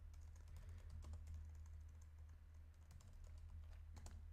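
Faint typing on a computer keyboard, a quick run of soft key clicks over a steady low hum.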